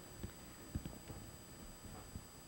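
Faint footsteps on a room floor: a few soft, low thuds, two of them close together just under a second in.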